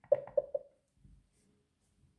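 Three quick electronic blips from the Xiaomi Mi Smart Clock's speaker in the first half second, the feedback tones as its top volume button is pressed, then near silence.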